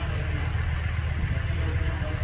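Engine of a vehicle idling steadily, a low even rumble.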